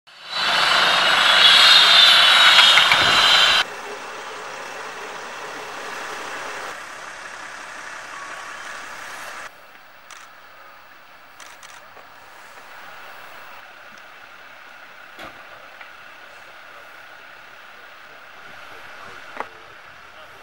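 Vehicle engines running at the roadside: a loud steady noise for the first three to four seconds that cuts off suddenly, then a quieter steady engine hum. Now and then sharp metallic clanks, the clearest near the end, as a stretcher is handled.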